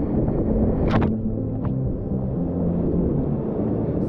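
Whitewater rapids rushing loudly around a kayak, heard close up from the boat with wind buffeting the microphone. Two brief sharp splashes come about a second in and again shortly after.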